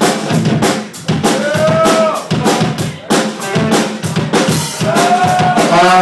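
Live rock drum kit played steadily and hard: a dense run of snare, bass drum and rim hits. A voice shouts briefly over it twice, around the second second and near the end.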